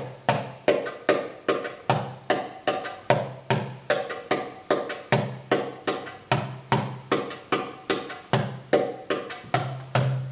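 Recorded percussion music for belly dance practice: a steady drum rhythm of about three strokes a second, with deep low strokes every second or two among sharper higher ones.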